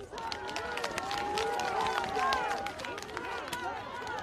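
A rally crowd cheering and shouting together, many voices at once, with scattered hand claps.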